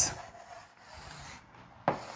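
Chalk scraping across a blackboard in soft strokes as a box is drawn around an equation, then a single sharp tap of the chalk against the board near the end.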